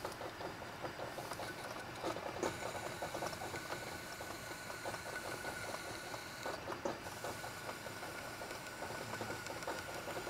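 Metal lathe running with a steady whine while a hand-held high-speed steel tool bit cuts a small metal part spinning in a collet, giving a fast, uneven patter of small ticks from the cut.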